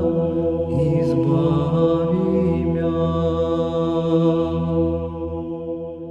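Sung church chant with long held notes over a low drone, fading out near the end.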